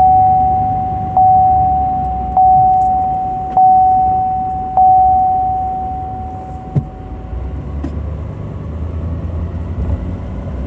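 A car's electronic warning chime dings five times, about a second apart, each ding fading away. Steady low road and engine rumble in the cabin runs underneath.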